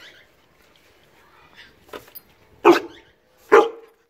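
Siberian husky giving two loud, short barks about a second apart near the end, excited for a raw chicken paw treat held out to it.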